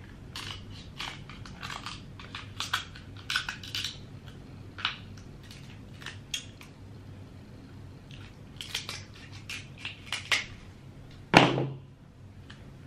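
Close-up eating sounds of king crab: irregular crunches and clicks from chewing crab meat and pulling it from the shell by hand, with one louder crunch near the end.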